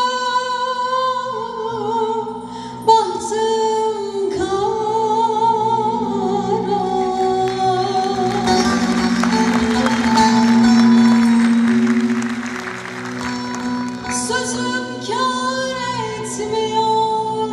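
A woman sings a Turkish folk song live over a band. Her long held notes waver, and the accompaniment swells fuller and louder in the middle before easing back.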